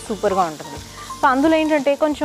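Vegetables sizzling as they are stir-fried in a wok with a wooden spatula, under a woman's voice that comes in twice, the second time held longer near the end.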